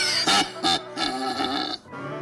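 A cartoon lion's voice: three short, loud vocal bursts with a bending pitch over background music. The sound drops off suddenly just before the end.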